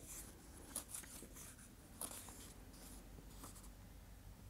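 Faint, scattered rustles and soft clicks of paper as the pages of a small Reclam booklet are leafed through.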